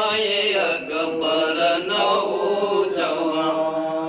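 Men chanting a Muharram lament (noha), long held notes sliding in pitch.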